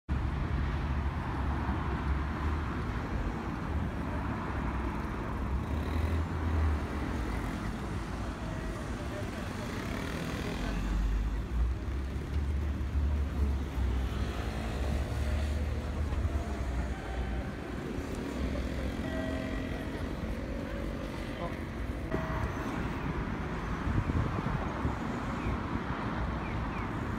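Road traffic at a busy city intersection: cars and vans passing with a steady low rumble, with people's voices in the background.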